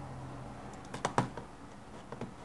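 Two quick clicks at a computer, about a fifth of a second apart, with a few fainter ticks around them.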